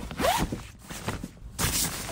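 A zipper on a black fabric duffel bag being pulled open, in two louder pulls about a second and a half apart.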